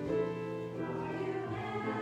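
Slow sacred choral music: voices hold sustained chords, moving to a new chord about one and a half seconds in.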